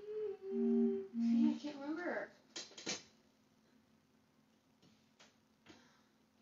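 A woman humming a few held notes of a melody, stepping down between two pitches, then a short gliding vocal sound, and a sharp click or knock at about two and a half seconds.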